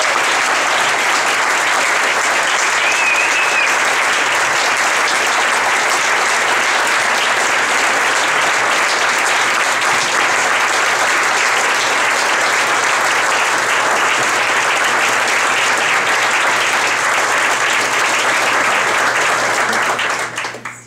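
Audience applauding: steady, dense clapping from a roomful of people.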